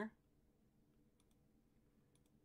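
Near silence with a few faint clicks of a computer mouse, a couple of them about a second in and another near the end.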